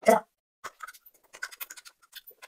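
Close-miked eating and utensil sounds: a short loud burst at the start, then a run of small sharp clicks and crackles as a metal fork picks food from a plastic tray.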